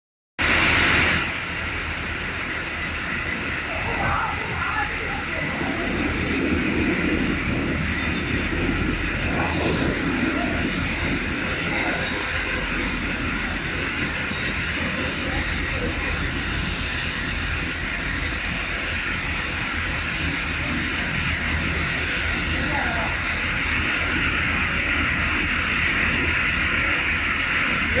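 Sawmill log-processing line running: a steady mechanical din from the multi-blade rip saw's motors, spinning blades and log conveyor.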